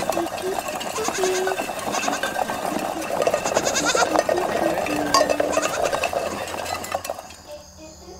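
A young goat kid bleating several times with a wavering, pulsing voice. The sound dies away near the end.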